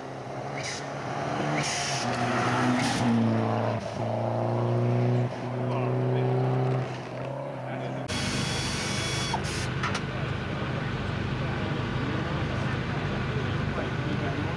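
Ford Sierra Cosworth rally car accelerating hard on a gravel stage: engine pitch rises and drops back at about three gear changes, loudest around 3 to 7 seconds in. After a cut near the middle, a steady low hum runs on under voices.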